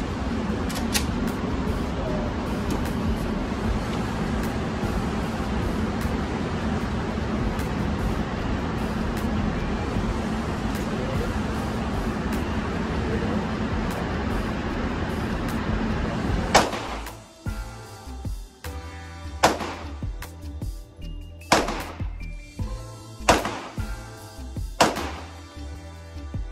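Steady background noise, then background music comes in about two-thirds of the way through. Over the music are five sharp, loud gunshots at uneven gaps of about two seconds.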